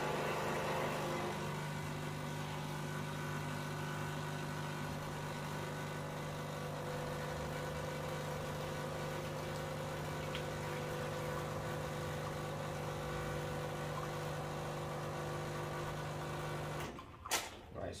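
Quick Mill Rubino espresso machine's vibratory pump humming steadily while it pulls an espresso shot, then cutting off about a second before the end, followed by a couple of sharp knocks.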